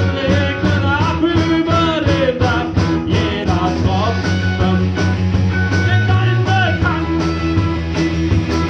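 Live rock band playing: two electric guitars, bass and drums, with a wavering, pitch-bending melody line over steady bass notes and an even drum beat.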